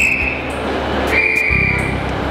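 Piano music with two steady, high, single-note blasts of a railway guard's whistle: one cuts off just after the start, and a second, longer one comes a little past halfway. A low rumble starts near the end.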